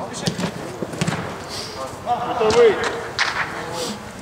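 A football being kicked and dribbled on artificial turf, with several short sharp thuds of ball touches and running feet, and a brief shout from a player a little past halfway.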